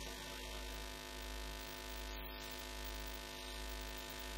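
Steady electrical hum from a public-address system: a constant buzzing drone of several even tones with a light hiss behind it.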